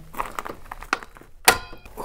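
Old corroded circuit breaker's handle being worked by hand, with a few faint clicks and scrapes, then snapping over with one sharp click about one and a half seconds in and a brief metallic ring.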